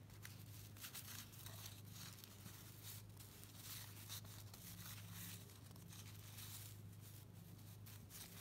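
Faint rustle and slide of 1990 Fleer cardboard basketball cards being thumbed through one by one in the hands, over a low steady hum.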